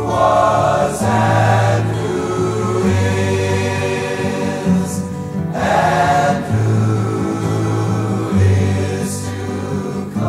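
A choir singing a hymn together in long, held chords over instrumental accompaniment with a steady low bass line.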